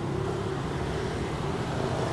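Steady hum of road traffic in the background, with no single event standing out.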